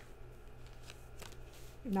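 Tarot cards being handled on a tabletop: a few soft taps and swishes as cards are slid and laid down. A woman starts speaking near the end.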